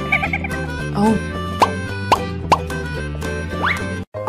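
Cartoon background music with three quick rising "bloop" sound effects about half a second apart, then a longer, higher upward sweep near the end.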